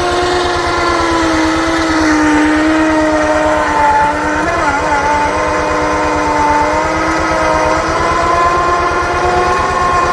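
Winch hauling a cable under heavy load to roll a log, its motor giving a steady whine that sags slightly in pitch and wavers briefly about four and a half seconds in. A low, even engine throb runs underneath.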